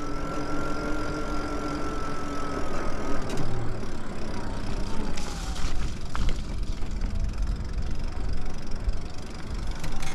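Electric bike motor whining steadily under power over a low rumble of tyres on rough, wet asphalt. The whine slides down in pitch a few seconds in as the bike slows, and a few sharp knocks come from bumps in the broken path.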